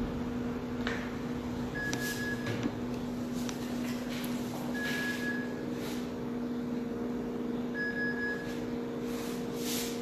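Steady low electrical hum with a short high beep about every three seconds, and faint soft swishes of hands working styling product through wet hair.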